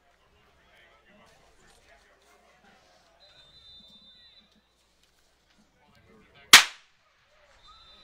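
A single sharp crack about six and a half seconds in, much louder than anything else, fading quickly. Before it there is only faint background, with a thin steady high tone heard twice.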